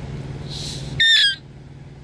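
A single short, high squeak from a rubber dog toy ball squeezed by hand, falling slightly in pitch, about a second in.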